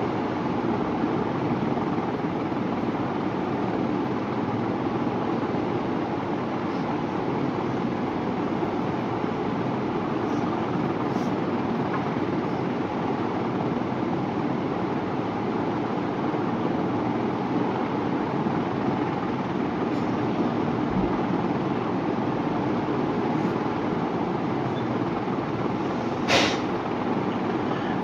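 Steady background noise, an even hiss and low hum with no words, broken only by one short click near the end.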